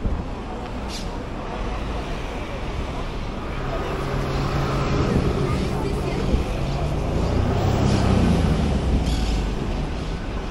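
Street traffic noise with a motor vehicle's engine passing on the road: its low rumble builds from about four seconds in, is loudest near eight seconds, then eases.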